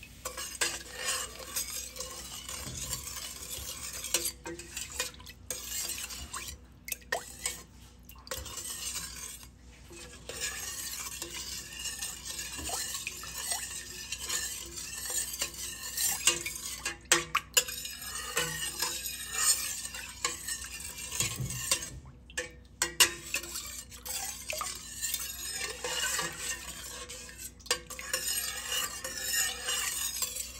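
Metal ladle stirring coconut milk in a stainless steel pot: the liquid swishes as the ladle scrapes and clinks against the sides and bottom, with a few brief breaks.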